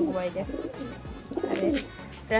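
Domestic pigeons cooing, with a couple of short calls in the loft.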